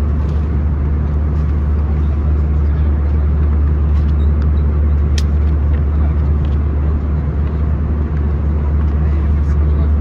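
Steady cabin noise of an Airbus A319 in flight: a loud, even rush of air and engine noise over a strong low hum. A glossy magazine page gives a brief light rustle about five seconds in.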